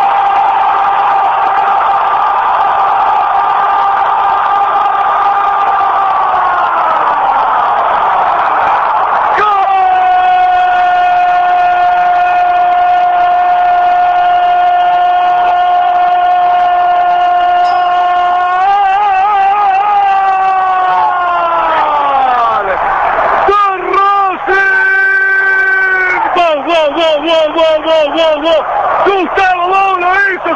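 Radio football commentator's drawn-out goal cry, a long "gooool" held on one steady note for about eight seconds until his breath gives out and the pitch sags. A second held cry follows, lasting about eleven seconds and falling away the same way. Near the end come short shouted calls and then fast excited talk.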